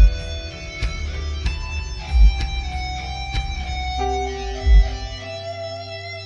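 Guitar-led instrumental music: plucked guitar notes over held chords, with a deep thump about every two and a half seconds. The deep bass drops out about five seconds in.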